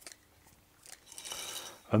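Nylon fishing line being drawn off a plastic rig winder: a light click, then about a second of soft rasping near the end.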